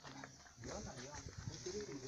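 People's voices talking at a distance, with a few faint knocks and scuffs.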